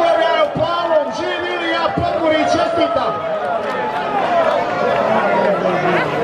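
A crowd of men shouting and cheering over one another in celebration, many voices at once without a break.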